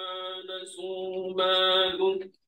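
A man's voice chanting Quranic recitation in Arabic, drawing out long held notes on a steady pitch. It grows louder about halfway through.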